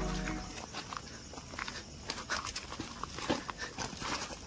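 Footsteps crunching irregularly on loose stones and dry leaves on a rocky trail, faint. The tail of music fades out in the first half second.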